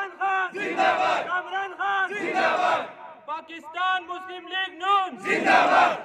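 A crowd of men chanting political slogans in call and response. A single voice leads each line and the crowd shouts back in unison, three times, with a longer lead line before the last answer.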